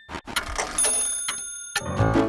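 Cartoon sound effect of a mechanism ratcheting: a string of irregular sharp clicks, with thin high ringing tones joining in partway through.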